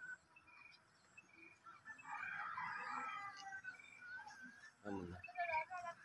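Birds chirping with short whistled calls, thickening into a busy burst of chirps about two seconds in. A louder, lower animal call with a sliding pitch comes in near the end.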